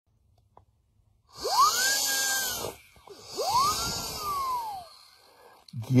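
Two long squealing whistle tones from a red lip-shaped novelty noisemaker blown in the mouth. Each glides up, holds high and slides back down, with a breathy hiss. The first starts about a second and a half in, the second follows about half a second later.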